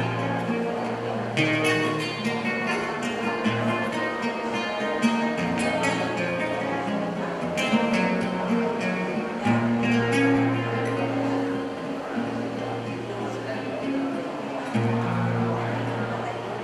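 Solo acoustic guitar playing a song's instrumental introduction: strummed chords over held bass notes in a steady rhythm, ahead of the vocal entry.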